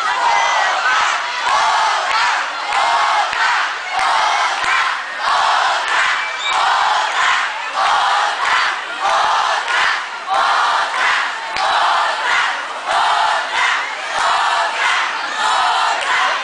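Large concert crowd shouting a chant in unison, the same short shout repeated in a steady rhythm of about three every two seconds.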